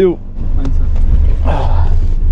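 Low, steady rumble of a car's engine heard from inside the cabin, with a short rustle of movement about one and a half seconds in.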